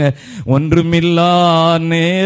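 A man's voice, the preacher's, breaks from speaking into a long chanted note held at one steady pitch. It starts about half a second in, after a brief pause.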